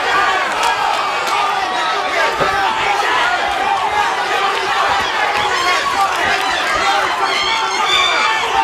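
Arena crowd shouting and cheering during a fight, many voices overlapping at a steady level.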